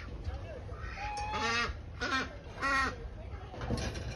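Domestic geese honking: three loud calls in quick succession in the middle, over a steady low background rumble.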